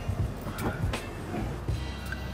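Front door of a Mazda CX-5 unlatched and swung open, a few faint clicks, over a low steady rumble and faint music.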